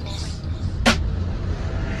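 Edited intro soundtrack: a loud, steady deep bass with one sharp hit about a second in.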